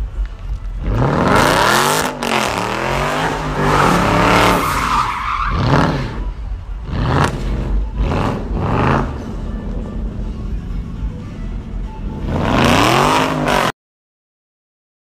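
Car engine revved hard again and again during a burnout, rising and falling in pitch, with the spinning rear tyres squealing and hissing against the pavement; the sound cuts off suddenly near the end.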